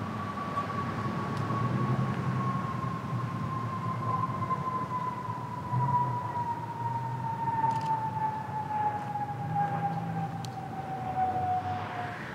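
A single whining tone slides slowly and evenly downward in pitch and cuts off near the end, over a low rumble of outdoor background noise.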